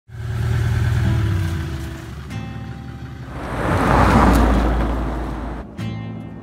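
A car engine running at low speed, then a vehicle drawing close in a swelling rush that is loudest about four seconds in and cuts off suddenly just before the end.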